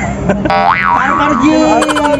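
A comic 'boing' sound effect: a quick springy pitch sweep up and down about half a second in, followed by a long drawn-out tone that slowly falls, over a steady low engine hum.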